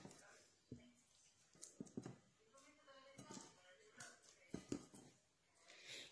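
Meatballs being dropped into a pot of meat broth: a few faint, scattered clicks and knocks against near silence.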